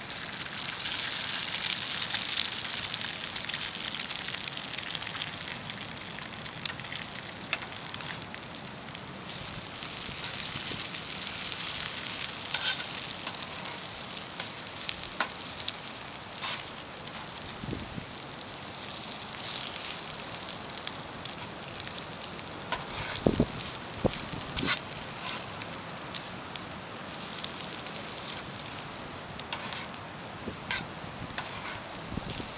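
Diced potatoes, bacon and an egg frying on a hot steel griddle plate, a steady sizzle that jumps up as the egg hits the plate at the start. Later a metal spatula scrapes and taps on the plate, with a few dull knocks in the second half.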